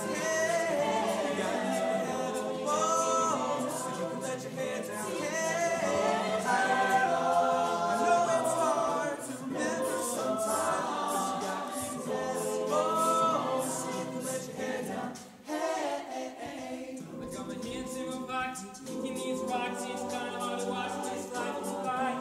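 High school chamber choir singing a cappella in close harmony, with held, shifting chords. The level dips briefly about fifteen seconds in, and the singing turns more rhythmic after that.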